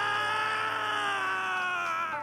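A man's long, anguished scream of the name "Yuria!", held on one high note that sags slightly in pitch and breaks off near the end.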